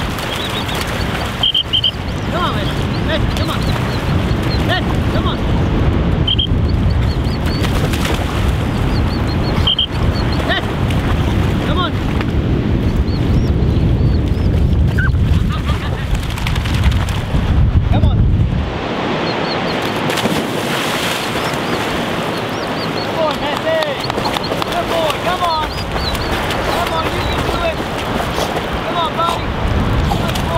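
Wind buffeting the microphone over a steady outdoor rush of river water, with small bird chirps scattered through it. The low wind rumble drops away about two-thirds of the way through.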